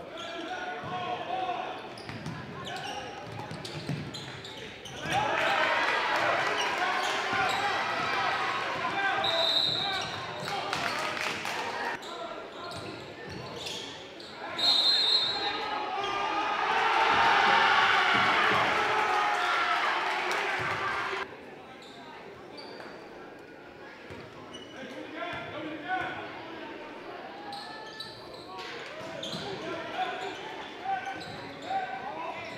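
Basketball game in a gym: a ball dribbling on the hardwood, sneakers squeaking and spectators' voices. The crowd cheers loudly twice, the second time after a made basket around the middle. The sound then drops off suddenly about two-thirds of the way through.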